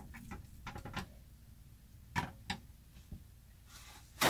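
A metal spoon scraping and clicking against a frying pan as seasoning is mixed into ground beef, with a pair of sharper taps about two seconds in and a knock near the end.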